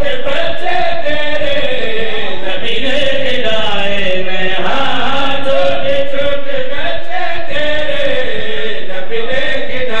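Male voices chanting a devotional recitation at a microphone, the melody rising and falling without a break.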